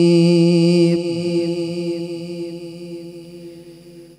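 A male qari's Quran recitation (tilawat): a long, steady held note that ends about a second in, followed by a reverberant echo slowly dying away.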